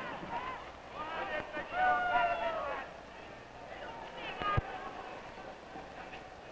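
A man's voice shouting with long drawn-out notes over faint arena crowd noise on an old optical soundtrack, with a single low thump a little past halfway.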